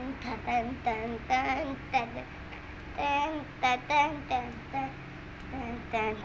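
A young girl singing a Kannada children's song unaccompanied, in two short phrases with brief pauses between them.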